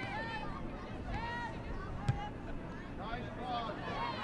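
Voices calling out across a soccer field over a background of crowd chatter, with a single sharp knock about two seconds in.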